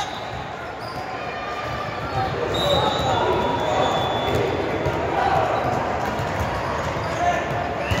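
Busy indoor volleyball hall: a steady hubbub of players' and spectators' voices, volleyballs thudding off hands and the hardwood floor across several courts, and a few brief high squeaks.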